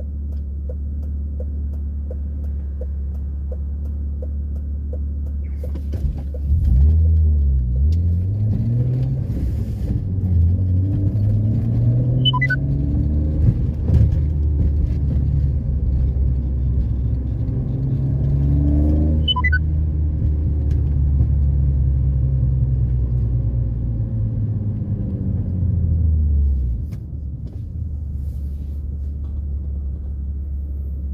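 A 1995 BMW E36 320i's 2.0-litre straight-six heard from inside the cabin. It idles, then pulls away about six seconds in, its note rising as the revs climb. The note falls again as the car slows and settles back to idle near the end.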